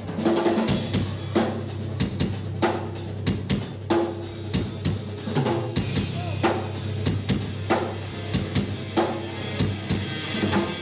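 Live rock band playing, led by a drum kit keeping a steady beat on bass drum and snare, over a low steady note.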